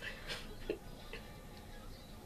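Quiet room with a few faint, irregular ticks.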